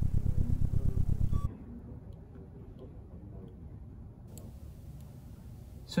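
Synthesized car-engine sound from a spatial-audio device: a low, pulsing rumble that drops abruptly to a much fainter level about a second and a half in.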